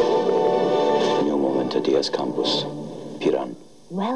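Soundtrack of a projected film played over the hall's speakers: music with a voice over it. The music fades in the first second, and the level dips briefly just before the end.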